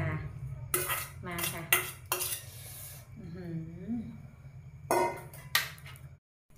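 Metal pot and utensils clanking against a large metal serving tray in a series of sharp knocks, with a stretch of scraping about two seconds in, over a steady low hum.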